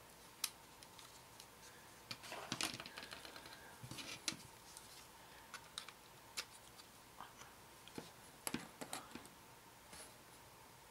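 Scattered light clicks and taps from plastic model kit parts being handled as a wing is fitted and clamped. They are busiest from about two to four and a half seconds in, with a few more near the end.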